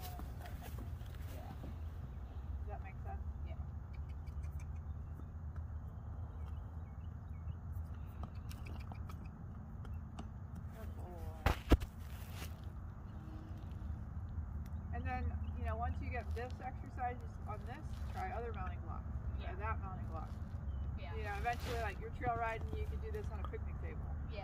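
Voices talking indistinctly over a steady low rumble, with one sharp knock about halfway through that is the loudest sound.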